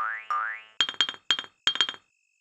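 Two quick rising cartoon 'boing' sound effects, then a rapid run of five or six sharp, dry knocks in close pairs, like bricks being set down. Faint cricket chirping runs underneath.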